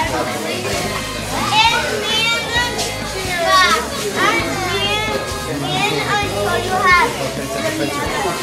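Many children's voices at once: excited chatter and high-pitched squeals overlapping throughout, with music playing underneath.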